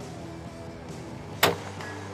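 A single rifle shot from a bolt-action military rifle, one sharp report about one and a half seconds in, over steady background music.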